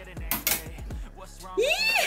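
Hand-held can opener cutting around the lid of a metal can, with a few sharp metallic clicks in the first second. Near the end a high voice rises and falls.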